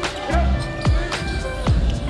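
Background music: an electronic beat with heavy bass hits, falling bass glides and sharp drum strikes repeating about twice a second.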